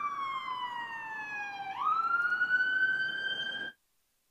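Emergency vehicle siren wailing: its pitch slides slowly down, sweeps quickly back up about two seconds in and holds, then cuts off abruptly near the end.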